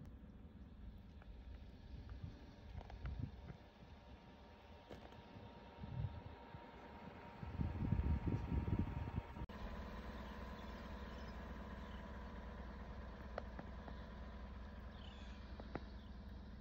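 Wind rumbling over the microphone in irregular gusts, the strongest lasting about two seconds around the middle, then settling to a faint steady low rumble.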